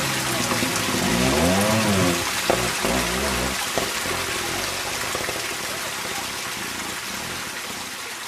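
Trials motorcycle engine revving in short rising and falling throttle blips as it climbs a rocky slope, with a couple of sharp knocks about three seconds in. The sound then grows steadily fainter as the bike pulls away uphill.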